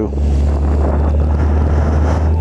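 Yamaha FJR motorcycle on the move: a steady low engine drone under wind rushing over the microphone.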